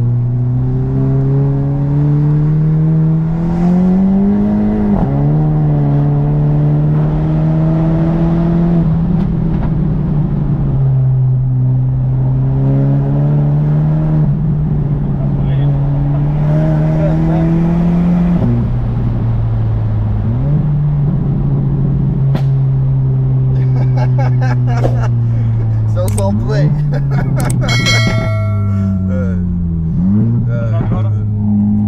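Volkswagen Golf 7 GTI's turbocharged 2.0-litre four-cylinder on a stage 1 remap, heard inside the cabin pulling through the gears: the engine note climbs and drops back at each upshift, several times. Near the end, as the revs fall, a run of sharp crackles comes through: the overrun pops of the pops-and-bangs map.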